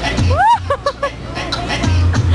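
A high voice gives a rising whoop, then three short laughs, over crowd chatter and background music with a steady bass beat.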